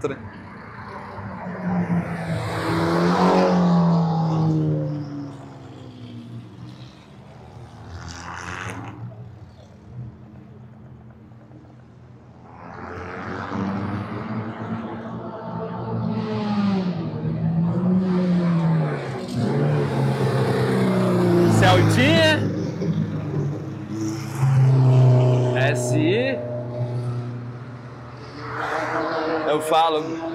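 Racing cars passing one after another along a circuit's straight. Each engine note swells, shifts in pitch as the car goes by and fades, with a quieter gap early on between passes.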